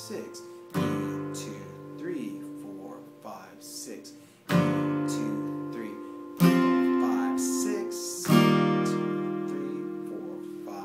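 Acoustic guitar, capoed at the third fret, playing single strummed chords that are each left to ring out and fade. There are four strums, about a second in, at four and a half seconds, and then about every two seconds after that.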